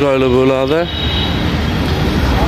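A man's voice for about the first second, then a steady low rumble of motor-vehicle noise.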